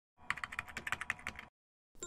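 Computer keyboard typing sound effect: a quick run of about a dozen key clicks lasting just over a second.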